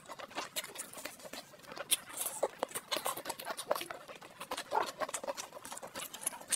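Close-miked chewing and wet mouth sounds of someone eating roast chicken: a dense, irregular run of sharp clicks and smacks.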